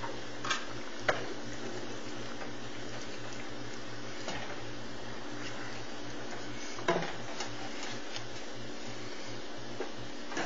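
A wooden spoon stirs breaded chicken pieces in a simmering cream sauce in a metal skillet, with a few sharp knocks of the spoon against the pan, about a second in and again about seven seconds in, over a steady low hum.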